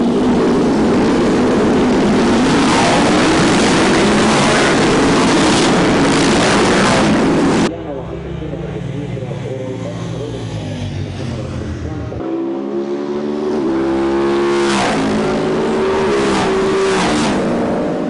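A field of Moto Guzzi V-twin racing motorcycles accelerating hard off the start line, a dense, loud mass of engine noise. After a cut about eight seconds in, single bikes pass on the track, and near the end one revs up through the gears with a rising pitch.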